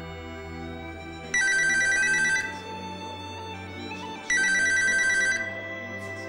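A telephone ringing with an electronic ring: two bursts of about a second each, about three seconds apart, over soft background music.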